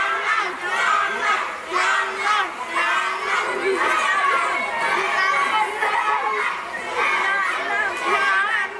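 Crowd of spectators in an indoor swimming pool hall: many overlapping voices chattering and children shouting, a steady din throughout.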